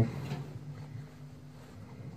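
Quiet room with a faint, steady low hum.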